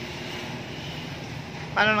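A steady mechanical hum of background noise fills a pause in speech, and a man's voice comes in briefly near the end.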